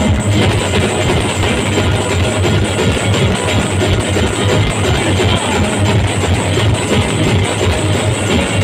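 Loud live band music from a stage sound system: a strummed, plucked-string melody over drums with heavy bass and a steady beat.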